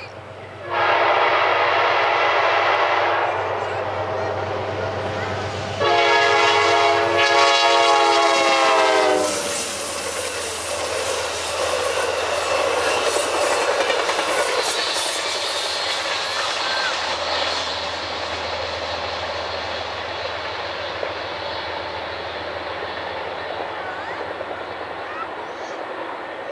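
Amtrak GE B32-8WH diesel locomotive sounding its horn for a grade crossing: two long blasts, the second louder and dropping in pitch at its end as the locomotive passes. The passenger cars then roll by with steady wheel-on-rail noise, with a thin high whine for a couple of seconds midway.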